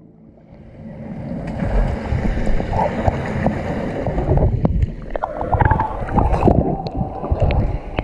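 Water gurgling and sloshing around an action camera submerged in a swimming pool, heard muffled from under the water, with many scattered knocks and thuds. It swells about a second in.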